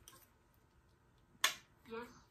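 Near silence, broken by one sharp click about one and a half seconds in.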